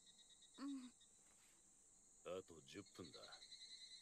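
Near silence with a faint steady high-pitched chirring of crickets, and two brief snatches of quiet dialogue, about half a second in and again from about two to three seconds in.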